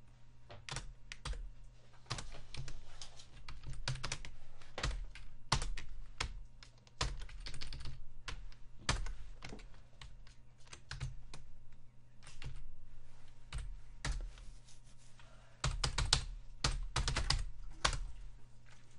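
Computer keyboard being typed on in irregular runs of keystrokes, with a quicker flurry of keys near the end, over a faint steady low hum.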